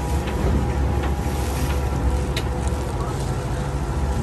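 Open motor boat under way on fast, churning river water: a steady rush of water with a low rumble underneath and wind buffeting the microphone.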